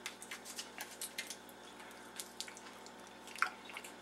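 Faint, irregular small clicks and wet mouth sounds of someone handling and eating a bite-sized cherry cheesecake.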